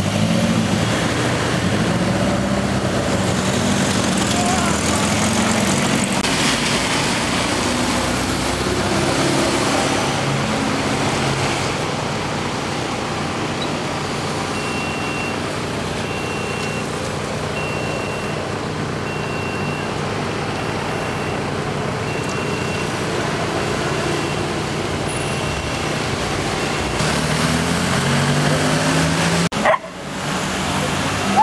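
Town street traffic: vehicle engines running and passing, with engine pitch rising as vehicles pull away near the start and near the end. From about halfway, a short high beep repeats about once a second for some ten seconds.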